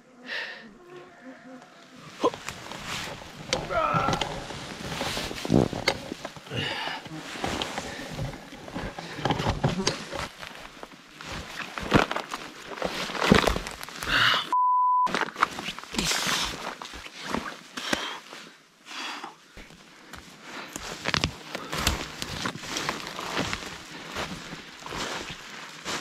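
Footsteps and branches crackling and swishing as a hiker with a heavy pack pushes through dense spruce brush, with heavy breathing and grunts from the effort; it starts about two seconds in. About halfway through, a short steady bleep tone briefly replaces all other sound.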